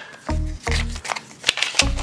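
Background music with a repeating bass note, over the rustling and crackling of a paper mailing envelope being unfolded and opened by hand, with a couple of sharp paper clicks in the second half.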